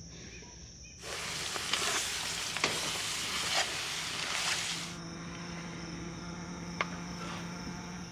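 Browned ground meat sizzling loudly in a cast-iron pot on a camp stove as milk is poured in, with a few scrapes of a metal spatula stirring it. The sizzle starts about a second in and stops abruptly about four seconds later, leaving a quieter low steady hum. Crickets chirp briefly at the start.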